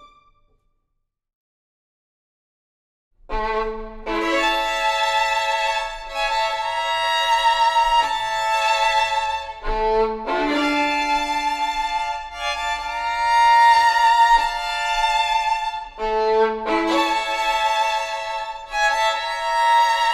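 Two violins playing a folk tune in duet, starting about three seconds in after a brief silence. The phrase comes round again roughly every six seconds.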